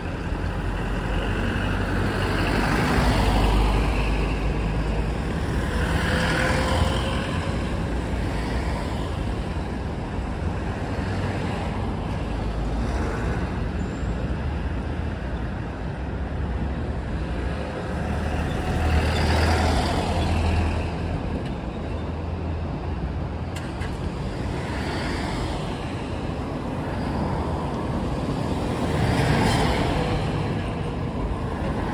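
Road traffic: cars, taxis and trucks driving past one after another, the engine and tyre noise swelling each time a vehicle passes close, with a large box truck going by near the end.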